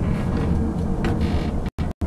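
A steady low rumble with a light hiss over it, cut by two very short dropouts near the end where the sound disappears entirely.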